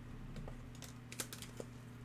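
A few light clicks and taps of hard-plastic card holders being handled and set on a tabletop, over a low steady hum.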